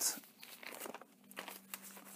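Faint rustling of paper as a paper cutout and a brown paper bag are handled.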